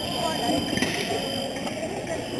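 Indistinct voices echoing in a large sports hall, with a few brief sharp clicks, one about a second in.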